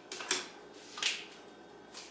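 Gorilla duct tape pulled off the roll in two short bursts about a second apart, as a layer is wrapped around a person's torso.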